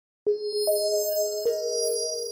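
Intro logo sting of three bell-like chime notes struck one after another, the second higher than the first and the third in between, each left ringing so they blend into a sustained chord.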